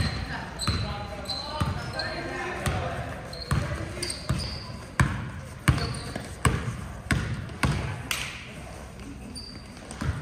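Basketball dribbled on a gym floor, one bounce about every two-thirds of a second, with short sneaker squeaks from players running on the court. Voices talk over it in the first few seconds.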